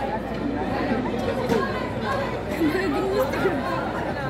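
Several people talking and calling out at once, their voices overlapping in steady chatter close to the microphone.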